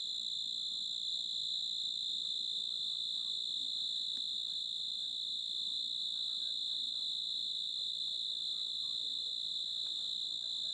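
Crickets trilling in a steady night chorus, one continuous high-pitched drone that does not let up.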